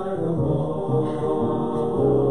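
Offertory music in a church service: slow, chant-like singing in sustained notes that change every half second or so.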